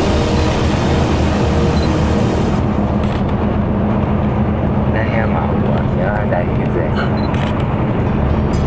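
Wind and road noise rushing on the microphone of a camera moving along a road. A voice is heard briefly in the middle.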